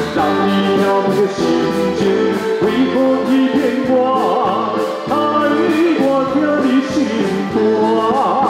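A live band playing a slow song through the stage sound system, with a man singing into a microphone.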